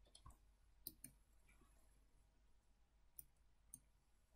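Near silence with a few faint computer mouse clicks: a pair about a second in and another pair near the end.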